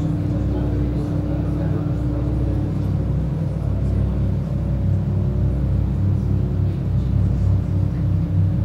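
Steady low rumbling drone from a sci-fi film installation's soundtrack playing in the gallery, with a held tone above it that fades about three seconds in.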